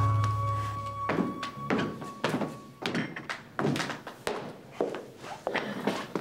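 Background music cue: a held bass note and a high tone die away, then a run of hollow thunks follows, about three a second.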